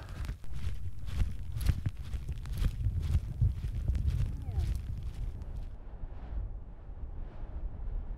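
Wind buffeting the microphone in a low, uneven rumble, mixed with footsteps and rustling on wet grass. The rumble and rustling thin out and get quieter about six seconds in.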